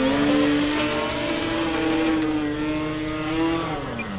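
Electric motor and propeller of a Flex Innovations Mamba 10 RC biplane running at high throttle, its pitch edging up, then falling away sharply as the throttle is pulled back near the end.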